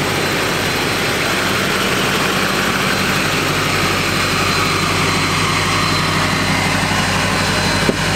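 A 2008 Chevrolet Silverado 2500HD's LMM Duramax 6.6-litre V8 turbodiesel idling steadily, with its emissions equipment deleted.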